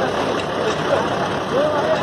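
Street noise around a convoy of army trucks: their engines running under a crowd talking, a steady noisy background.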